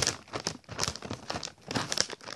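Plastic snack bag of Brownie Brittle crinkling as it is handled and pulled open, a run of irregular crackles.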